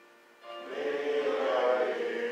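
Congregation singing a hymn: after a brief pause, the next phrase begins about half a second in with held notes.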